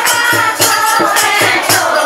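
A group of women singing a dehati folk song together, accompanied by a dholak played with the hands in a steady, fast rhythm of about three to four beats a second, with hand clapping on the beat.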